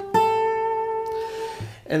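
Takamine steel-string acoustic guitar: two single notes on the high E string, G at the third fret ringing on, then A at the fifth fret plucked just after it and left to ring out for about a second and a half.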